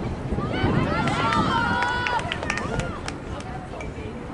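Several high-pitched voices shouting and cheering at once, loudest in the first three seconds, with a few sharp clicks among them; the shouts come just as the goalie makes a save.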